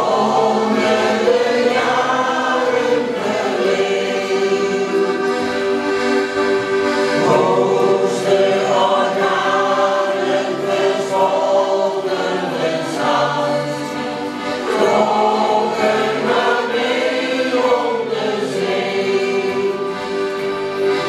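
Mixed shanty choir of men and women singing a song in long held phrases, accompanied by accordions.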